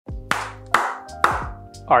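Music with three sharp hand claps, about half a second apart, in time with it.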